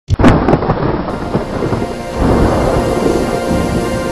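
Thunderclap sound effect: a sharp crack at the very start, then a long rolling rumble that swells again about two seconds in, with music underneath.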